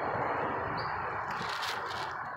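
Steady outdoor background noise with faint short high chirps, and a brief rustle about one and a half seconds in.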